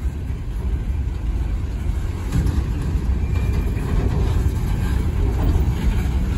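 Empty coal hopper cars of a freight train rolling past close by, a steady low rumble of wheels on rail.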